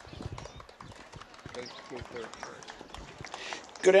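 Handheld microphone being passed from one person to another: scattered knocks, thumps and rubbing on the mic body, over faint crowd chatter.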